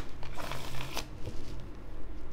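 A deck of oracle cards being shuffled by hand: quick papery riffles, the strongest about half a second and one second in, then lighter handling.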